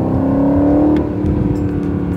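Twin-turbo V8 of a 2019 Aston Martin Vantage heard from inside the cabin while driving, its note rising slightly under throttle for about a second, then easing off after a short click.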